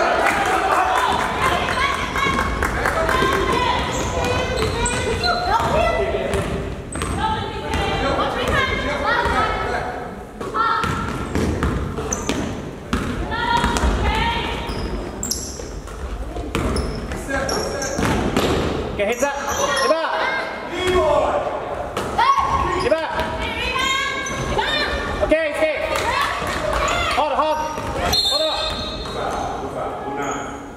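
Basketball bouncing on a hardwood gym floor during play, with players' and spectators' voices and shouts echoing through the gym.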